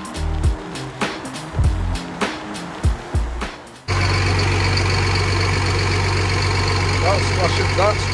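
Background music with a steady drum beat, cut off suddenly about four seconds in by a crane lorry's diesel engine idling steadily.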